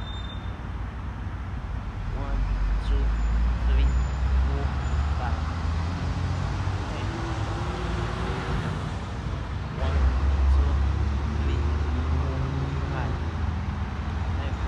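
Low outdoor rumble that swells about two seconds in and again near ten seconds, with faint wavering sounds above it.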